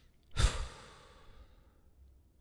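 A man sighs once into a close microphone: a breathy exhale about half a second in that trails off over the next second.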